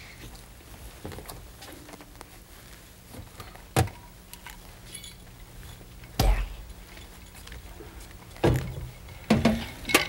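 A few scattered knocks and thumps, the loudest about six seconds in, as a kettle of hot water and a glass pitcher of cold water are fetched and set down at a kitchen sink, over a faint steady hum.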